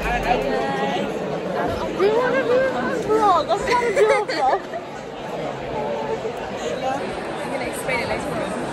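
Chatter of many people in a large lecture hall, with nearby voices talking over the background hubbub, loudest a few seconds in.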